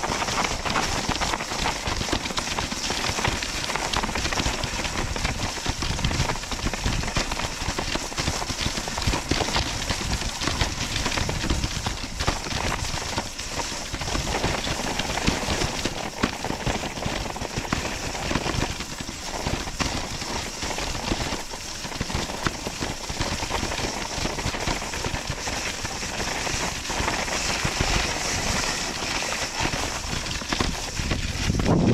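Esla T7 kicksled's narrow snow runners scraping steadily over icy, hard-packed snow while a dog pulls the sled at a run.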